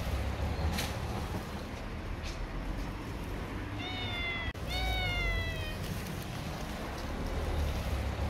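Domestic cat meowing twice, about four and five seconds in, the second call longer; each meow falls in pitch. The first meow comes from a tortoiseshell stray.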